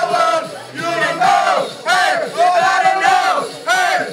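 A group of teenage boys singing and shouting loudly together into a microphone, holding long notes that swell and fall in short phrases.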